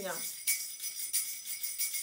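A small hand-held jingle bell ring shaken in repeated strokes, its little bells ringing brightly, with a red apple-shaped fruit shaker shaken along with it.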